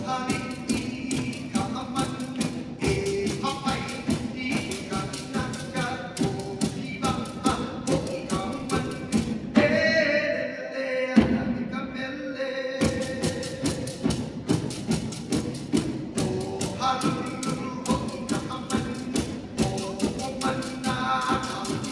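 Pū'ili, split-bamboo hula rattles, struck in a steady rhythm of sharp clacks under a chanted mele. About halfway the clacking stops for a few seconds while the chanting voice holds a long note, then the rhythm resumes.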